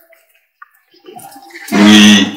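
A man's voice through a microphone: a pause with only faint scattered sounds, then near the end a loud held chanted note begins.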